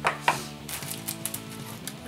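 Packaging being handled and opened by hand: a few sharp clicks and crackles, the loudest about a quarter of a second in, then a quicker run of clicks around the middle.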